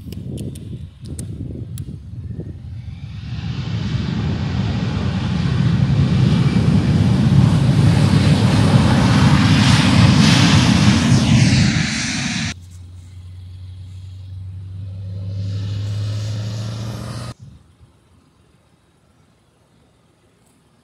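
Airbus A319 airliner's jet engines at high power as it rolls along the runway, building over the first few seconds to a loud, steady noise with a gliding whine. It cuts off abruptly about twelve seconds in, and a quieter, lower hum follows that also stops suddenly some five seconds later.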